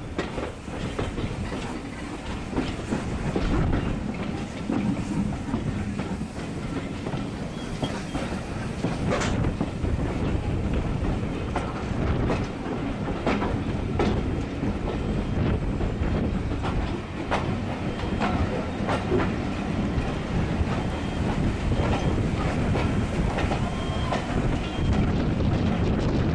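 Railway carriage rolling slowly over jointed track and pointwork, heard from on board: a steady low rumble with irregular wheel clicks and knocks, one sharper knock about nine seconds in.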